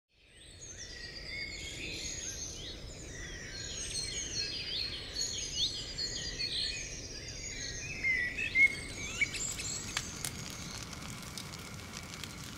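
Several birds chirping and singing together over low outdoor background noise, fading in at the start. The birdsong thins out after about nine seconds, and a few sharp clicks follow near the end.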